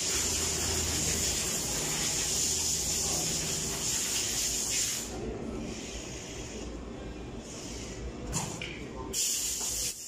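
Automatic fabric spreading machine running, a steady hum under a hiss. The hiss drops away about halfway through and comes back near the end.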